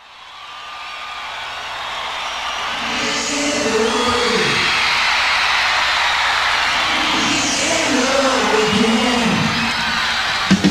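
Concert audience cheering, whooping and whistling, fading in over the first few seconds, with wavering shouts rising above the crowd noise now and then.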